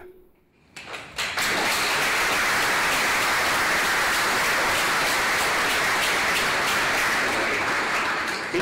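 Audience applauding, starting about a second in and keeping up steadily.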